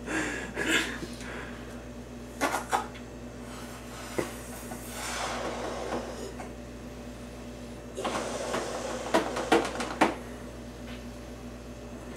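A rubber balloon being blown up by mouth: long puffs of breath rushing into it, with a few sharp clicks from the rubber being handled in the first half.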